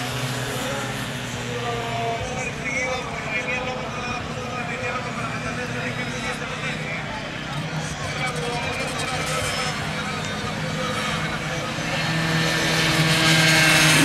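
Racing motorcycle engines running on the circuit, their pitch holding fairly steady. One bike grows louder over the last couple of seconds as it comes past close by.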